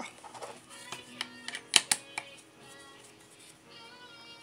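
A handful of sharp metallic clicks and taps, mostly in the first half, as a hex key works the screws of a small homemade metal slim vise on a Sherline mill table, over faint music.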